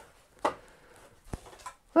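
A few light knocks and creaks from a giant 3D-printed plastic Lego seat as a person shifts his weight on it: one duller knock about half a second in, then two sharp clicks near the end.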